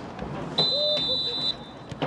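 Referee's whistle blown once, a steady high blast of about a second starting about half a second in.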